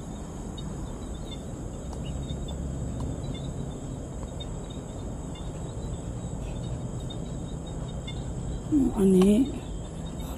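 Steady outdoor night ambience: a low, even rumble of distant city traffic with a faint, steady high-pitched insect trill over it. A woman says a short word about nine seconds in.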